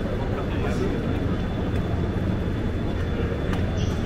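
Railway station ambience: a steady low rumble with the indistinct chatter of people nearby.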